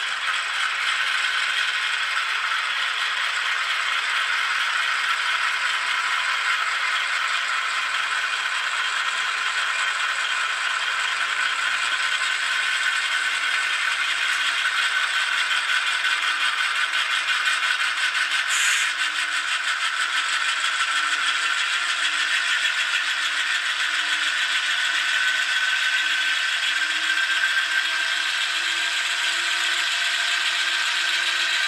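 Diesel locomotive sound from an ESU LokSound V5 Micro decoder in an N scale GE Dash 8-40BW, played through a 9 mm × 16 mm sugar-cube speaker, so the engine sound comes out thin and rattly with no deep bass. It runs steadily while the model moves along the track.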